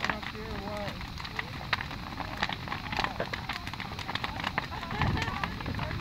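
Large wood bonfire crackling, with frequent irregular sharp pops and snaps over a steady rush. Faint distant voices are heard near the start.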